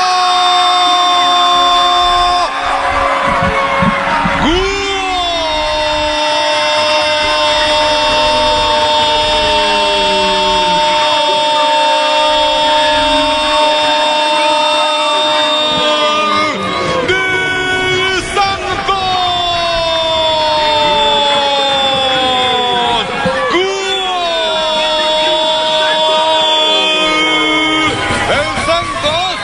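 Football commentator's long drawn-out goal cry: a held, shouted call stretched over several long notes, each sliding slowly down in pitch, with short breaks for breath.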